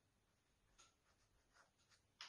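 Near silence, with faint soft strokes of a paintbrush on watercolor paper, the two clearest about a second apart.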